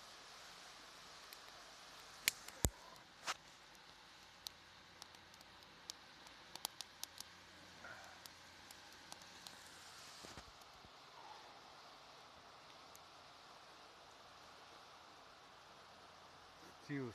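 A campfire of wet wood crackling, with a few sharp pops about two to three seconds in and scattered small ticks until about ten seconds in, over a faint steady hiss of wind and lake waves on the shore.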